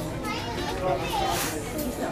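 Indistinct voices of other shoppers, children's voices among them, talking in the background of a store.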